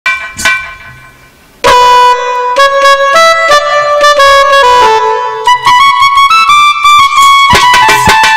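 Harmonium playing a melody: a brief chord at the very start that fades, then after a quiet second and a half a run of held notes stepping up and down. Sharp drum strokes join in near the end.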